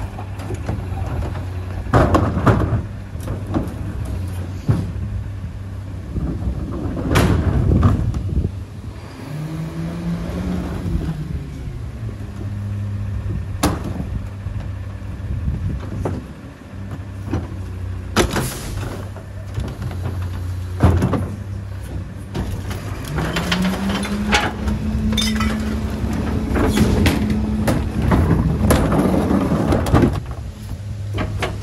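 Mack rear-loader garbage truck's diesel engine idling, while carts are tipped into the hopper with loud bangs and clatters of recycling falling in. Twice the engine speeds up, holds and drops back as the hydraulic packer cycles to compact the wet recycling.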